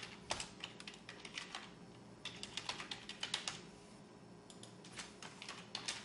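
Computer keyboard typing in three quick runs of keystrokes separated by short pauses.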